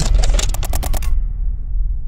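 Sound-design intro of a hardstyle track: a rapid run of sharp clicks, about ten a second, over a deep low rumble. The clicks stop about a second in and the rumble carries on.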